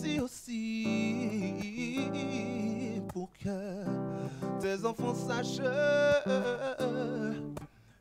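Slow gospel song performed live: a man singing a sustained melody with vibrato over acoustic guitar chords, with a short break in the sound just before the end.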